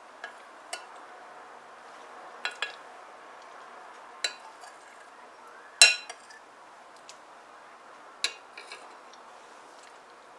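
Metal spoon clinking against a white ceramic soup plate while stirring and scooping thin pea soup: about nine short, sharp clinks at uneven intervals, the loudest about six seconds in.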